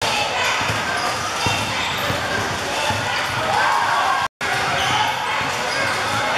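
A basketball being dribbled on a hardwood gym floor under the continuous talking and shouting of a crowd of spectators in a large sports hall. The sound drops out for a split second just after four seconds in, then carries on as before.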